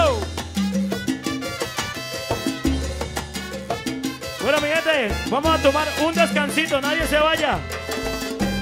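Live salsa band playing, with a steady bass line. A lead melody with sliding, bending notes comes in about four and a half seconds in.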